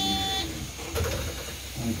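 Cabin of a moving electric city bus: a low rumble, with a steady electronic beep tone that cuts off about half a second in, and faint talk in the background.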